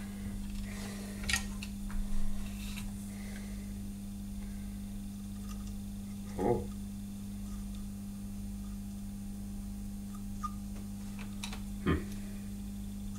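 A steady low hum, with a few light clicks and taps from hands handling the wires and the stepper motor's metal housing while soldering.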